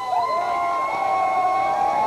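A live polka band holding its closing note. The pitch scoops up just after the start, then holds steady as a long sustained chord.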